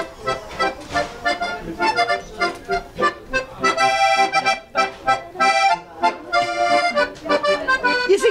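Piano accordion playing chords in a steady rhythm, opening a song before any singing comes in.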